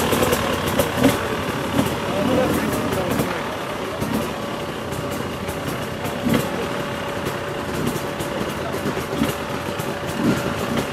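Off-road motorcycle engines idling steadily, with people talking over them.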